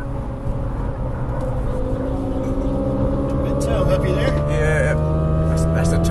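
Car engine heard from inside the cabin, pulling hard under full acceleration, its note rising slowly and growing louder as the car gathers speed.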